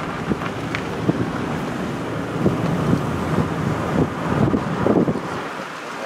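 Wind buffeting the microphone of a moving car, a low rumble with irregular flutters over the car's road noise; the rumble drops away near the end.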